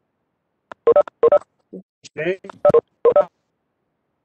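Two pairs of short electronic beeps from a video-conferencing app, the pairs almost two seconds apart, with a few brief voice sounds between them.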